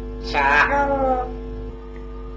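African grey parrot giving one drawn-out vocal call that falls in pitch, about a second long.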